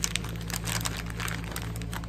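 A thin clear plastic bag crinkling and crackling as small cellophane-wrapped packets of stickers are pushed into it, with a quick burst of crackles right at the start.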